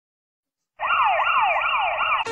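An emergency siren in a fast rising-and-falling yelp, about three sweeps a second. It starts abruptly out of silence about a second in.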